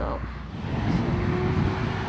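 Diesel engines of heavy earthmoving machines, a crawler bulldozer and an articulated dump truck, running with a steady low rumble that comes in about half a second in.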